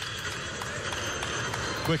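Basketball arena ambience: a steady crowd murmur with players' footsteps on the hardwood court.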